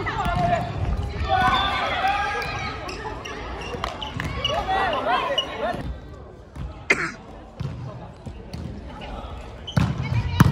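Volleyball rally in a gymnasium: sharp slaps of hands and arms striking the ball, one about seven seconds in and another near the end, echoing in the hall. Players' voices call out twice in between, in the first few seconds and again around the middle.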